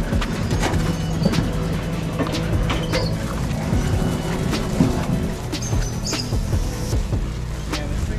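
Background music with a low bass line, with scattered knocks and clicks over it.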